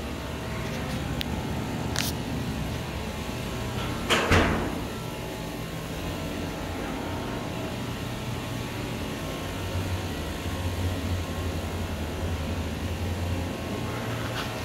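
Otis traction elevator running in its hoistway after its machine brake has released, heard from the landing as a steady low hum. There is a sharp click about two seconds in and a louder rushing thump about four seconds in, and the low hum grows stronger near the end.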